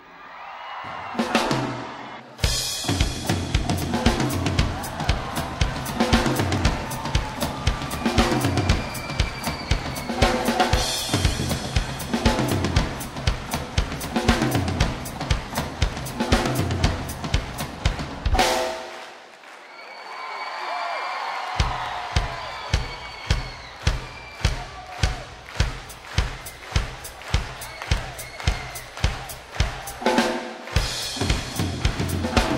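Live drum solo on a rock drum kit: dense strokes across snare, toms, bass drum and cymbals. The low drums drop out for a couple of seconds about two-thirds through, then a steady bass-drum beat of about two strokes a second carries on under the rest of the kit.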